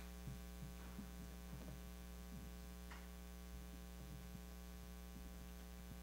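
Steady electrical mains hum in the sound system, with a few faint, scattered sounds in the room.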